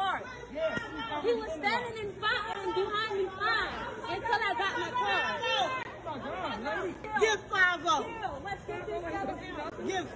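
Speech only: several people talking over each other, the words indistinct.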